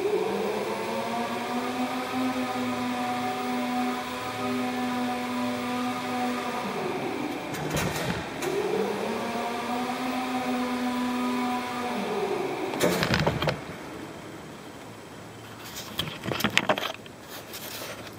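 Electric drive motor of an aerial work lift travelling. A whine spins up, holds steady for about six seconds and winds down, then a second, shorter run follows. A few knocks and clunks come near the end.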